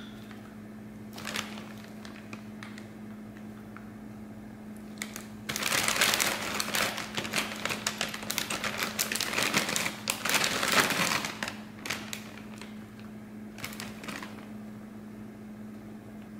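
A plastic bag of frozen berries crinkling and rustling for about six seconds in the middle, with a few light clicks from the spoon and berries before it. A steady low hum runs underneath.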